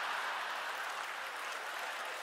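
A large theatre audience applauding steadily.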